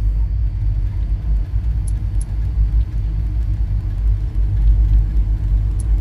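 A loud, steady deep rumble with a faint hum above it and a few faint ticks.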